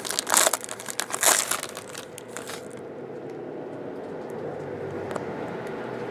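Foil wrapper of a 2014 Tribute baseball card pack crinkling as it is torn open and the cards are pulled out, with sharp crackles for about the first two and a half seconds. After that only a low steady hum remains.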